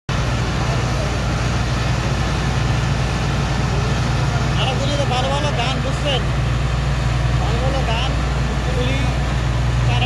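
Steady, loud engine drone of the pump machinery sucking sand out of the ship's hold. Men's voices calling out over it from about halfway through.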